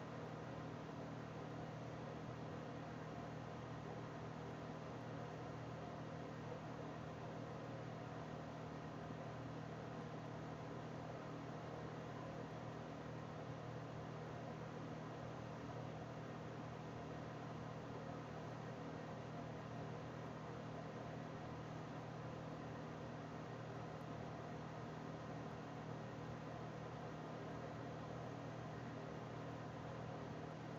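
Steady low hum with faint hiss, the background noise of a recording room, with no distinct events.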